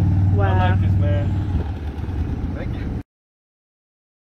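A vehicle engine idling with a steady low drone, with a brief spoken word or two over it; the sound cuts off abruptly to silence about three seconds in.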